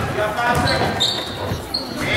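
A basketball bouncing on a wooden gym court with voices in the hall. A few short, high squeaks come in from about a third of the way through.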